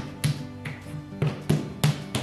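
A block of soft marbled porcelain clay knocked down on a wooden workbench as it is turned and squared, about five short dull knocks at uneven spacing over background music.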